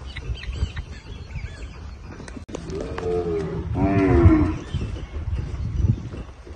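Gyr cattle lowing: a shorter moo about halfway through, then a longer, louder moo about four seconds in.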